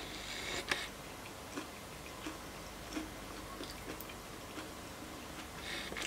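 Faint sounds of someone chewing a forkful of tortellini salad: soft, irregular clicks and smacks from the mouth, roughly one every half-second to second.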